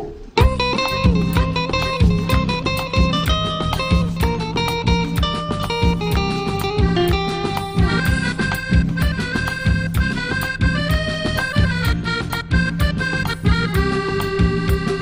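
A live studio band starts playing suddenly about half a second in. Hand drums (dholak and tabla) keep a steady beat under a keyboard melody and a low bass line.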